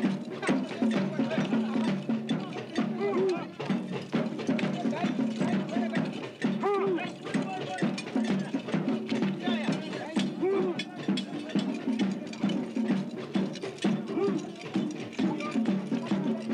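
Ceremonial percussion for a Dogon mask dance: a dense, rapid run of clicking and knocking strikes, with voices calling over it in short rising-and-falling cries.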